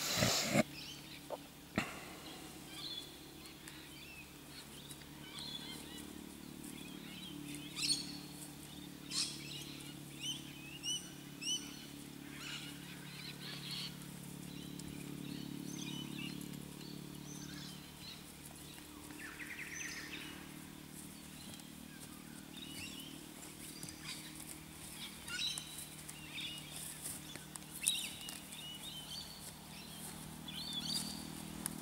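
Birds chirping and calling throughout, many short high calls scattered over a steady low hum, with a loud sharp knock at the very start.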